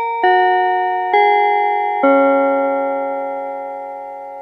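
Short outro chime played on a bell-like mallet instrument: three struck notes about a second apart, falling in pitch overall. The last note is left ringing and slowly fading.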